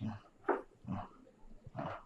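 A man groaning in pain from a head injury: four short, low groans in quick succession.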